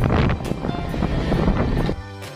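Motorcycle riding noise: wind buffeting the microphone over a low engine rumble, with background music faintly underneath. The riding noise cuts off abruptly at the very end, leaving only the music.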